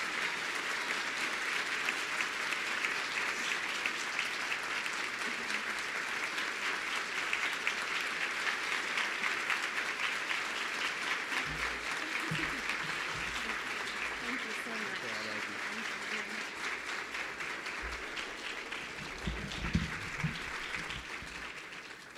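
Audience applauding steadily, tapering off near the end, with a few low bumps partway through.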